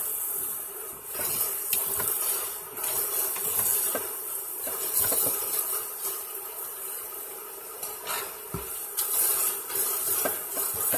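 Kitchen tap running a steady stream of cold water into a stainless steel sink while cooked pasta is rinsed under it. A few short knocks and clinks break in now and then.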